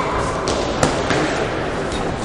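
Boxing gloves smacking in an exchange: a few sharp slaps, the loudest a little under a second in, over the steady noise of a large sports hall.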